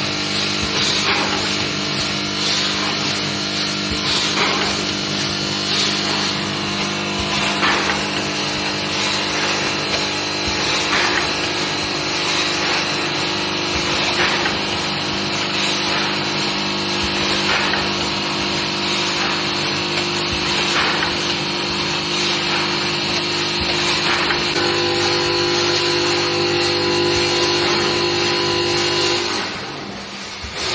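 Vertical form-fill-seal bag packing machine running: a steady hum and whine with a short stroke about every two seconds as it cycles through each bag. Near the end the hum shifts in tone, then drops off sharply.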